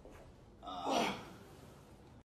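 A person's loud, breathy gasp, about half a second long, a little over half a second in.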